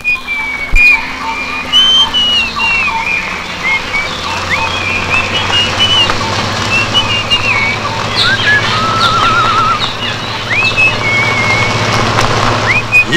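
Birds chirping and whistling in short calls, with a quick trill about three quarters of the way through. Under them the low, steady engine hum of an open jeep grows louder as it approaches.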